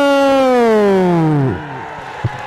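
A male kabaddi commentator's drawn-out call on the public address: one long held note that slides down in pitch and dies away about one and a half seconds in.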